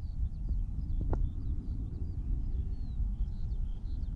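Outdoor wind rumble on the microphone, with small birds chirping faintly and a single sharp click about a second in.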